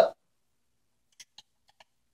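Four faint, short squeaks and clicks in quick succession, a little past a second in, from a hand screwdriver being set into and turned on a gearbox mounting screw.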